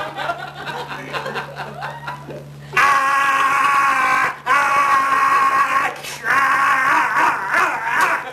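A man's voice through a microphone and PA, letting out long drawn-out yells in three stretches from about three seconds in, with audience laughter.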